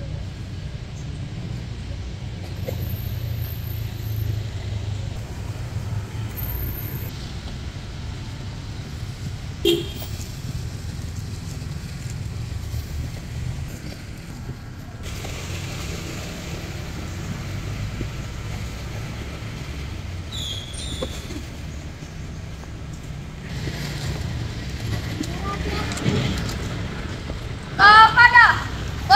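Outdoor background: a steady low rumble with a faint murmur of voices and one sharp click about ten seconds in.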